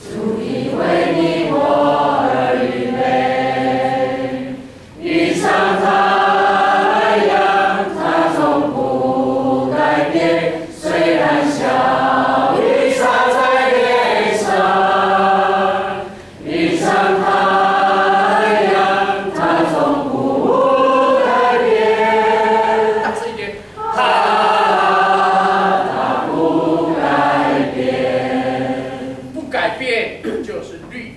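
Church congregation singing a worship song together in long phrases, each ending in a short pause for breath.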